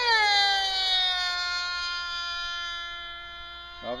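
Two-stroke glow engines of F3D pylon-racing model planes running flat out, a high multi-toned whine. The pitch drops over the first second or so as a plane passes, then holds steady and slowly fades.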